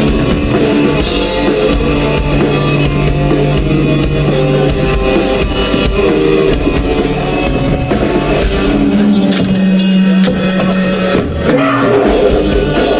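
A live rock band playing loud: electric guitars, bass guitar and drum kit, with held notes over continuous drumming.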